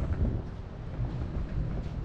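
Low, steady outdoor background rumble, mainly wind on the microphone, with no clear distinct events.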